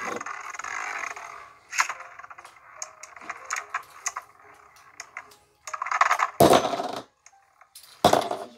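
Beyblade Burst spinning tops whirring and grinding against each other and the plastic stadium floor, with scattered sharp clicks as they collide. A louder clatter comes about six seconds in.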